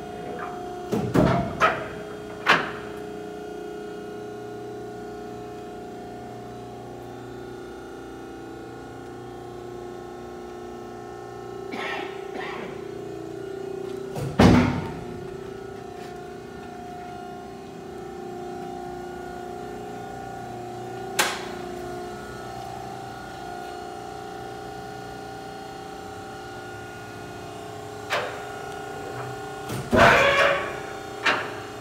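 Hydraulic power unit of a 2006 International NA-1260 horizontal baler running on automatic: a steady electric motor and pump hum. A few sharp metallic knocks are scattered through, several near the start and the loudest about halfway.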